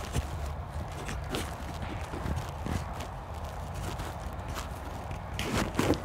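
Low steady hum from the sound system, with faint scattered ticks and knocks.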